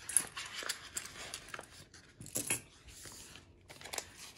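Crinkling and rustling of plastic: a stack of Canadian polymer banknotes being handled and taken out of a clear vinyl binder pocket, with scattered light clicks and one sharp click about a quarter second in.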